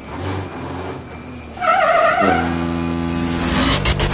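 Intro music with vehicle sound effects: a low rumble, then about halfway through a loud wavering horn-like blast that settles into a steady held chord.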